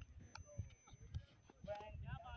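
Faint outdoor ambience: distant voices and a few soft low thumps and clicks, with a voice growing a little clearer near the end.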